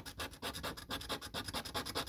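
A coin scraping the silver latex coating off a paper scratch card in rapid, even back-and-forth strokes.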